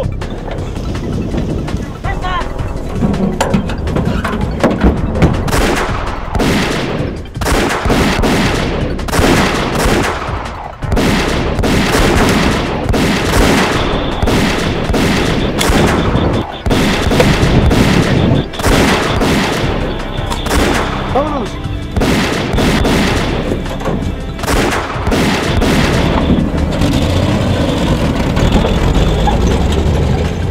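Film gunfire: a long, irregular string of gunshots, dense from about five seconds in until near the end, over background music.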